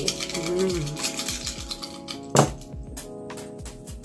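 Small stones and crystals cast by hand onto a cloth-covered table, clicking against each other in a run of light clicks, with one louder knock about two and a half seconds in.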